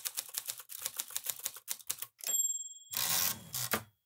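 Typewriter sound effect: a quick run of keystrokes, a bell ding about two seconds in, then a short rushing sound of the carriage return.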